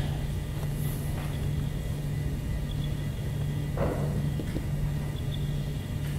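Room tone: a steady low hum under faint background noise, with one brief faint sound about four seconds in.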